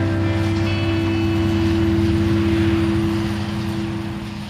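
Combine harvester engine running in a steady drone with a held low tone, easing off slightly near the end.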